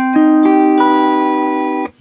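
Electric guitar sounding a C minor-major 7 chord (C, E-flat, G, B), its four notes picked one after another in the first second and left ringing together, then damped suddenly near the end.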